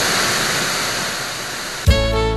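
A steady loud hiss of noise, used as a transition sound effect, easing off slightly; music with a strong beat starts just before the end.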